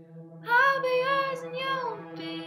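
A young woman singing: her voice comes in about half a second in with one long, wavering phrase that slides down near the end, over a steady low tone.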